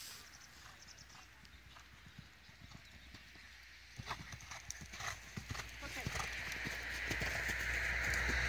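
Horse's hooves cantering on soft arena footing: a run of dull hoofbeats, several a second, starting about halfway through. A rushing noise swells toward the end.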